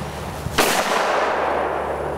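A single shotgun shot about half a second in, fired at a sporting clays target; its report rings out and fades over the following second.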